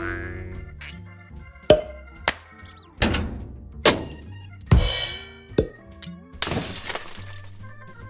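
Background music with a string of sharp plastic thunks and clacks, about one a second, as 3D-printed PLA helmet pieces are set down and fitted together. A brief hiss follows near the end.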